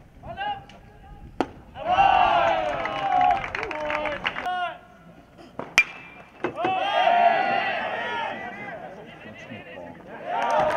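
A metal baseball bat strikes the ball with one sharp crack and a short ping about six seconds in. Voices shout from around the field before and after the hit, with a smaller click earlier on.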